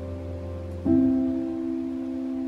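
Slow, soft piano music: held chords, with a new chord struck just under a second in, the loudest moment, and left to ring.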